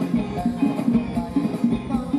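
Thai ramwong dance music played by a live band, with a steady drum beat and a repeating bass line.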